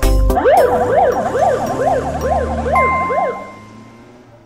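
Ambulance siren wailing in quick rising-and-falling sweeps, about two to three a second, over a low engine hum. It fades away as the ambulance drives off.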